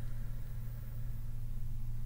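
Room tone: a steady low hum with faint hiss and no other events.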